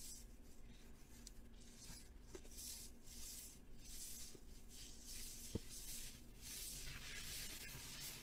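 Soft, gritty scuffing footsteps on concrete, roughly one or two steps a second, with a few faint clicks.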